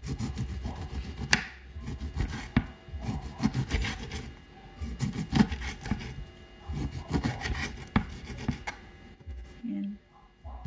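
Kitchen knife cutting slices from a lemon on a wooden cutting board: repeated cutting strokes through the fruit, with several sharp knocks as the blade meets the board.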